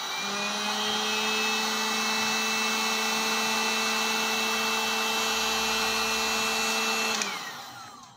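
Handheld electric heat gun (Total brand) running steadily, a blower rush with a high whine whose pitch rises over the first second as the motor comes up to speed. About seven seconds in it is switched off and the whine falls away as the motor winds down. It is heating an oven thermostat to test that the thermostat cuts out.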